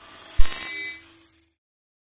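Outro logo sting sound effect: a short swell, then a sudden deep hit with bright, bell-like ringing that fades out about a second in.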